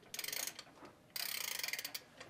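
A small wind-up music box being wound by its key: two runs of rapid ratchet clicking, the second starting about a second in and longer than the first.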